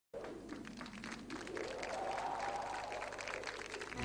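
Studio audience applauding, growing a little louder after about a second and a half.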